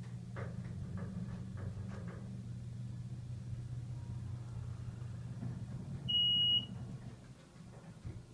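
Otis Series 1 hydraulic elevator car travelling down with a steady low hum, which dies away as the car levels and stops near the end. About six seconds in, a single loud electronic beep of about half a second sounds as the car arrives at the floor.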